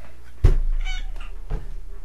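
A domestic cat meows once, briefly. A sharp low thump comes just before it, and a softer one follows about a second later.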